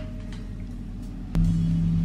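Faint low room hum, then a single click about a second and a half in, after which a steady low hum sets in and holds.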